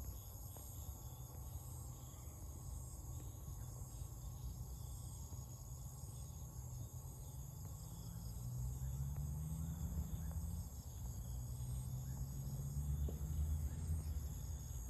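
Steady, high-pitched chorus of insects calling, over a low rumble that grows stronger in the second half.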